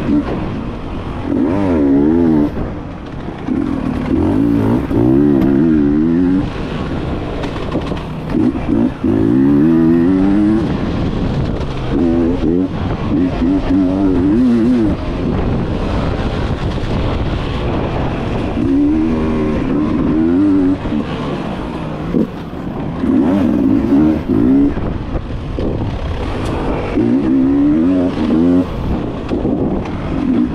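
Enduro motorcycle engine ridden hard on a dirt trail, revving up and dropping back again and again every second or two as the throttle is worked, with frequent short knocks mixed in.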